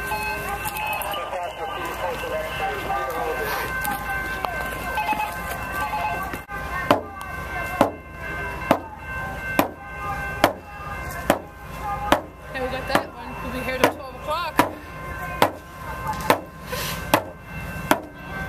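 Voices singing, then from about six seconds in a hand drum struck with a beater in a steady beat a little more than once a second. Several steady high tones hold underneath.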